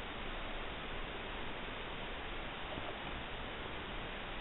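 Steady, even hiss of recording noise with no distinct events; any sound of the hook and yarn is lost in it.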